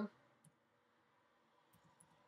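A few faint computer keyboard and mouse clicks over near silence: one click about half a second in, then a couple near the end as keys are typed.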